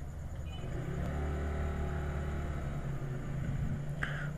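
Low background rumble with a faint steady hum, growing a little louder for a couple of seconds from about a second in.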